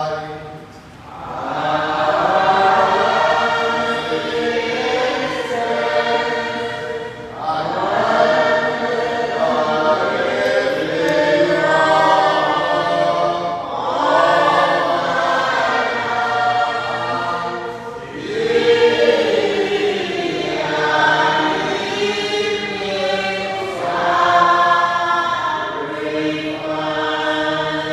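Church choir singing together in chanted phrases, the voices pausing briefly for breath every four to six seconds.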